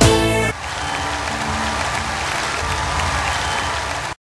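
A song ends on a final note about half a second in, followed by steady audience applause.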